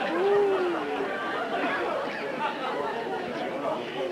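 Several voices talking over one another in a steady jumble of chatter.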